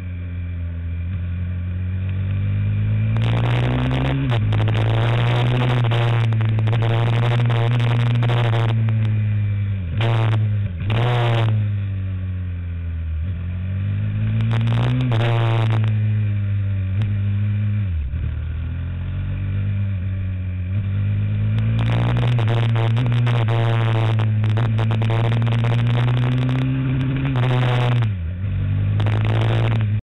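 A racing kart's engine heard onboard at speed. It holds a high, steady note along the straights, drops sharply in pitch when lifting and braking for corners (around ten, eighteen and twenty-eight seconds in), then climbs back as it accelerates out. Wind and road noise run underneath.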